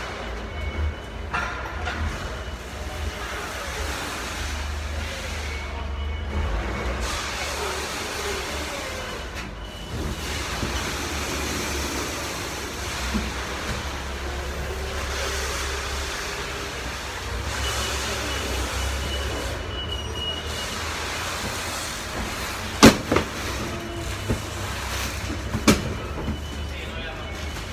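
Loading-dock machinery noise: a steady low engine-like rumble with scattered clatters, and one sharp, loud bang near the end followed by a smaller one.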